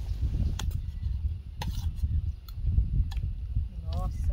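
Spoons clicking against plates a few times as two people eat, over a steady low rumble.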